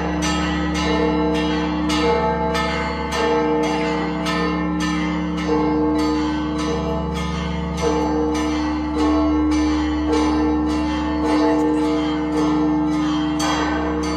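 Several church bells ringing in a rapid, steady peal, about two strikes a second, their tones humming on between strikes.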